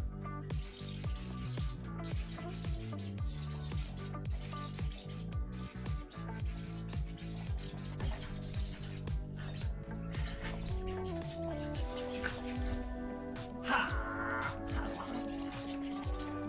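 Background music with a steady beat of crisp high ticks for the first nine seconds or so, then a gentler melody.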